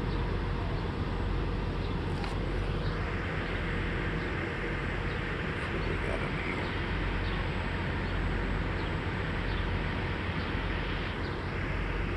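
Steady outdoor background noise, a low rumble with a hiss above it and a few faint ticks.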